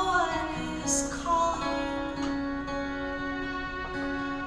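Violin and acoustic guitar playing a slow tune, the bowed violin line sliding between notes over the guitar.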